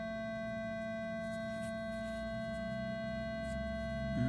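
A steady electronic tone made of several fixed pitches over a low hum, holding level without change, with a few faint ticks.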